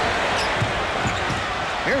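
Steady crowd noise in a packed basketball arena, with a basketball being dribbled on the hardwood floor.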